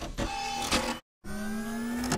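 3D printer stepper motors whining as the axes move: a steady tone with a few clicks in the first second, then after a short gap of silence a tone that rises slowly in pitch as the motor speeds up.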